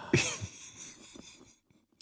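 A podcast host's brief breathy vocal noise at the start, cough-like, fading away within about a second.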